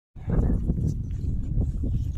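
Wind buffeting the microphone as a loud, uneven low rumble, with a short burst of voice or handling noise near the start.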